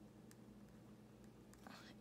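Near silence: room tone with a faint steady hum and one or two faint ticks, and a soft breath near the end.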